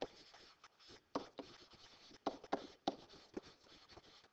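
Stylus tapping and rubbing on a hard writing surface while words are handwritten: a series of short, light taps, about two a second, with soft scratching between them.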